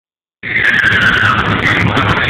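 Loud music playing through a car's sound system, distorted on the microphone, starting about half a second in; a high wavering tone that dips and rises stands out over it.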